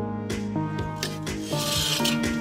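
Background music with held tones. Near the end, a brief scrape as a rusty steel disc harrow blade is picked up and drags against the others.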